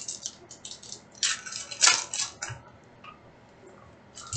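Foil trading-card pack wrapper being torn open and crinkled by hand: a run of crisp crackles, loudest about two seconds in.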